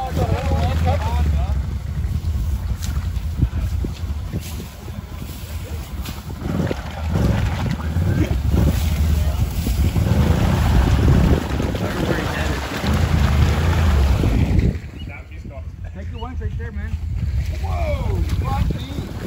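Can-Am Renegade 1000 XMR ATV engine running stuck in deep mud water, revving in repeated surges as the quad is throttled and pushed to work it free. The engine sound drops off sharply about 15 seconds in.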